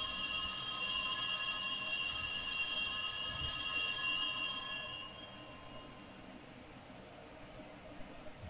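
Altar bells ringing at the elevation of the chalice after the consecration, bright high ringing that holds steady and then fades out about five seconds in.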